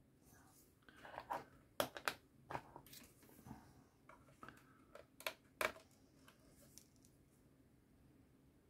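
Faint, irregular clicks and short scrapes of a small metal hobby tool and tweezers working on a plastic model ship's deck and parts, about a dozen over a few seconds.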